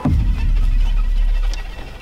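Horror film score: a heavy, deep bass drone that opens with a sudden low hit and drops away in the last moments.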